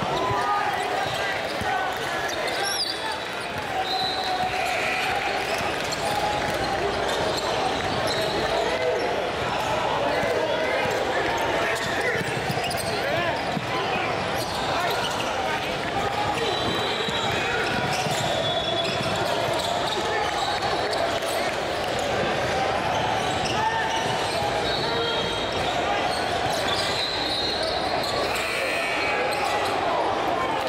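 Live gym sound of a basketball game: a ball bouncing on the hardwood court under steady crowd and bench chatter, echoing in a large hall, with a few short high sneaker squeaks.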